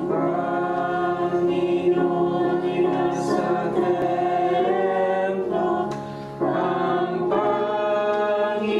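Congregation singing a slow hymn, one held note after another, with a short break between lines about six seconds in.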